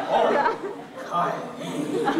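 Actors speaking stage dialogue, with a brief lull in the middle.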